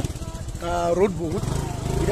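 Motorcycle engine running steadily at low revs, with a short stretch of voice over it about half a second in.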